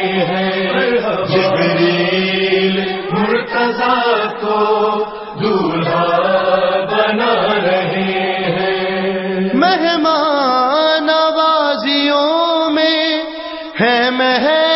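Devotional manqabat chanting: a chorus of voices holds a steady droning refrain. About two-thirds of the way through, a single voice takes over, singing a drawn-out line alone.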